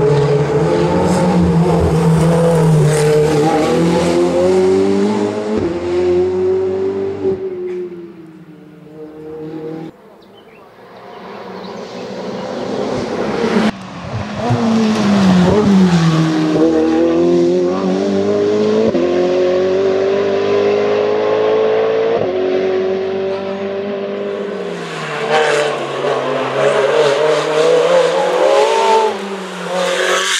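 Ferrari 488 Evo race car's twin-turbo V8 driven hard uphill, its engine note rising and falling as it shifts and brakes for bends. It fades away about eight seconds in, then returns loud in a new pass a few seconds later.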